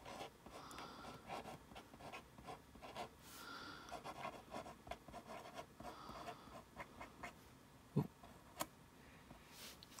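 White liquid chalk marker writing letters on a chalkboard: faint, short scratching strokes of the tip on the board, one after another, with a brief "ooh" about eight seconds in.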